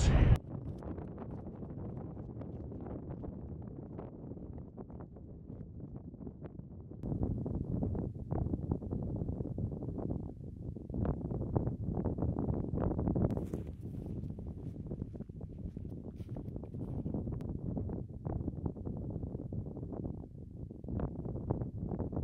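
Wind buffeting the camera microphone: a low, unsteady rush that swells in gusts from about seven seconds in.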